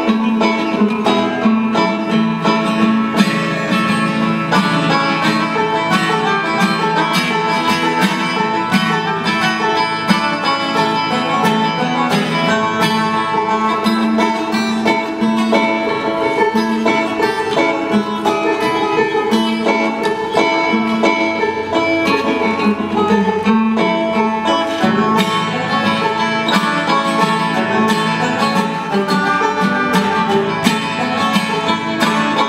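Acoustic guitar and banjo playing an instrumental bluegrass tune, with fast picked notes throughout.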